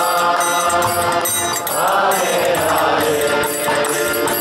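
Kirtan: a group chanting a devotional mantra in unison over a sustained harmonium drone, with a violin and a steady, high jingling beat.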